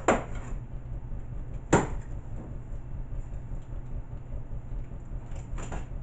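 Two sharp knocks about a second and a half apart, the second the louder: the flaps of a cardboard TV box being pulled open and slapping against the box, over a steady low hum.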